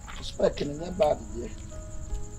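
Crickets chirring in a steady high-pitched band, with a person's voice calling out loudly for about a second in the middle.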